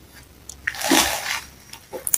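A short breath near the microphone, a rush of air lasting about half a second in the middle, with faint clicks before and after it.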